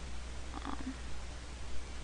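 Steady low electrical hum with a faint hiss from the microphone recording chain. A short, faint sound comes about half a second in.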